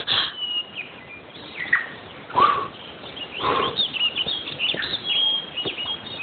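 Birds chirping and calling, with many short high chirps and a few louder, lower calls that fall in pitch.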